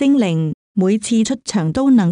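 Speech only: one voice reading aloud in Chinese, with a brief pause about half a second in.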